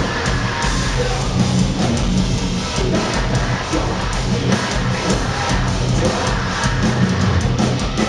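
Metalcore band playing live, loud and continuous: distorted electric guitars and drum kit, with vocals over the top.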